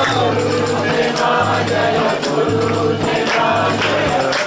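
A group singing a devotional kirtan chant together, with jingling hand cymbals and a low note pulsing on and off about every half second.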